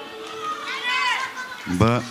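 Crowded party voices. A high voice calls out with an up-and-down pitch about a second in, a louder voice shouts near the end, and faint band music plays underneath.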